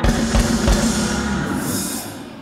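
Church band's drum kit: two heavy bass-drum hits under a held low chord, with cymbals swelling near the end before it all fades.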